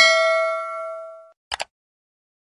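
A bright bell-like ding rings and fades away over a little more than a second, followed by two quick mouse-style clicks. This is a subscribe-button animation's sound effect, with the notification-bell chime and the cursor clicks.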